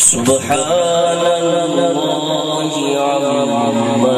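A man reciting the Quran in melodic tajweed style (tilawat), drawing out one long phrase of held, gently wavering notes that step down in pitch near the end.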